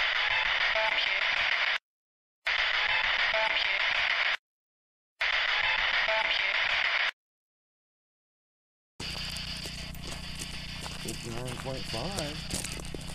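A short, heavily filtered and amplified snippet of a field recording, played three times in a row with dead silence between the plays. It is a hissy, static-laden clip presented as an EVP (electronic voice phenomenon), heard by the investigators as a voice saying "Watch it!". About nine seconds in, the unprocessed outdoor recording returns with a steady low hum and hiss.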